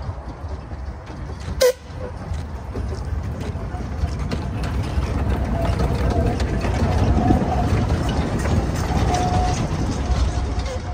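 Narrow-gauge steam locomotive Darent gives one short toot on its whistle, then runs close past hauling its coaches, the rumble of the engine and wheels on the rails building through the middle and staying loud to the end.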